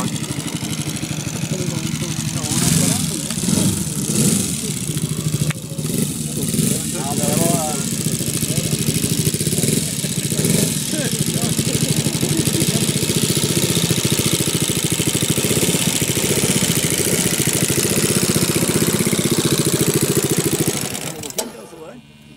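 Valach 60 four-stroke engine of a large-scale radio-controlled Fokker D.VII biplane running steadily on the ground with an even firing beat. The sound drops away about a second before the end.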